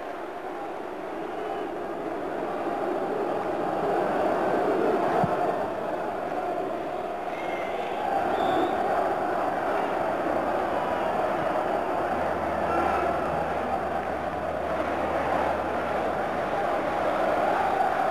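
Football stadium crowd: a steady mass of voices, the away fans chanting and singing, certainly making themselves heard in the ground after their side's equaliser.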